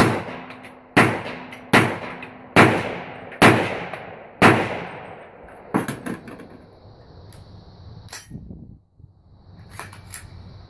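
Six rifle shots from an AR-15 with a 300 AAC Blackout barrel, fired about a second apart, each followed by a short echo; the magazine holds a mix of subsonic and supersonic rounds. A few light metal clicks follow as the rifle is handled.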